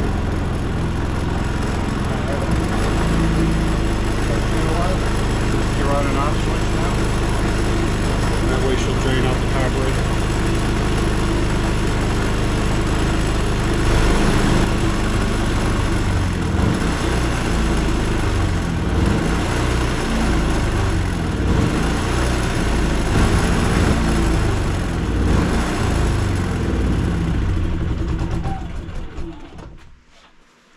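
Predator 3500 inverter generator's single-cylinder four-stroke engine running steadily, then shut off near the end, its sound dying away over about two seconds.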